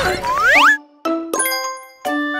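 Cartoon sound effects: a heavy thud as a toy hammer cracks open a plastic surprise egg, with whistle-like glides sliding up and down. A little past halfway, a bright sparkling chime rings and fades.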